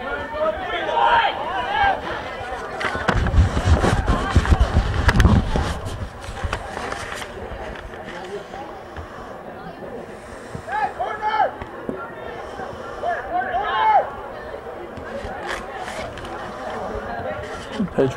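Players shouting to each other across an outdoor soccer field, with calls near the start and again about ten to fourteen seconds in. A few seconds in comes a loud stretch of low rumbling and sharp knocks.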